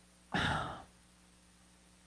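A woman's single audible sigh, a breathy exhale of about half a second that starts a moment in and trails off.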